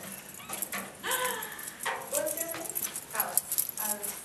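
Voices talking briefly in a room, with a rapid run of sharp clicks and knocks about three seconds in.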